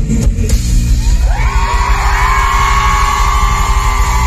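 Live pop-rock band playing loudly, with heavy drums and bass; about a second in, a long, high voice note comes in and is held over the band.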